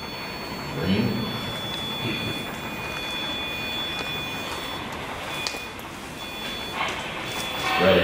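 Ghost box (spirit box) scanning through radio frequencies: steady hissing static with thin whining tones that come and go, and brief chopped snatches of voice about a second in and again near the end.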